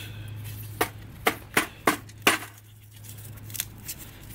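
Lumps of homemade charcoal clinking against each other and against the metal paint can as they are handled and put back in. There are about five sharp, light clinks over a couple of seconds.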